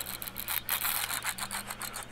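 Fishing reel clicking rapidly and unevenly while a hooked fish is played on a heavily bent rod.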